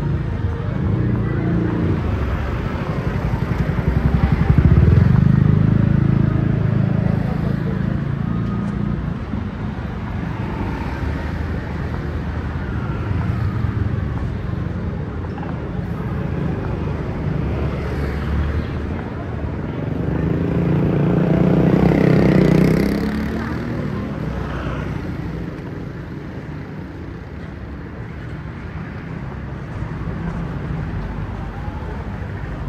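Street traffic: cars and motor scooters passing close by over a steady low rumble, with background voices. Two vehicles pass louder, about five seconds in and again around twenty-two seconds in; the second rises and falls in pitch as it goes by.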